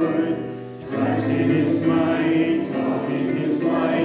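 A congregation singing a hymn together in long, held notes, with a short break between lines just under a second in.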